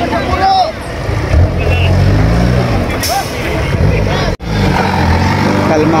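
Off-road buggy engine revving hard and unevenly under load as its large mud tyres dig into a muddy climb, with people shouting over it. The sound drops out for an instant a little after four seconds in.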